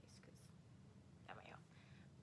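Near silence: a few faint snatches of soft, whispered speech over a low steady room hum.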